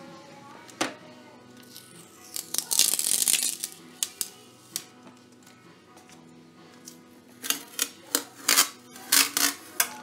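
Masking tape peeled off a foil-covered glass panel with a brief rasp about three seconds in, then a run of sharp clicks and taps as the panel is picked up and tape is handled near the end, over faint background music.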